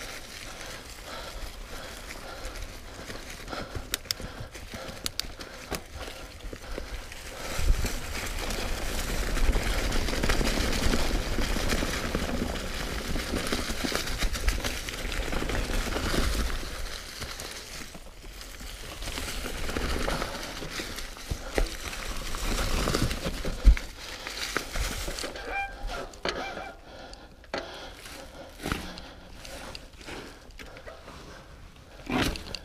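Mountain bike tyres rolling and crunching through dry fallen leaves on a dirt trail, with the bike rattling over the ground. It gets louder in two long stretches through the middle, with a sharp knock near the end of the second, then eases to quieter rolling with scattered clicks.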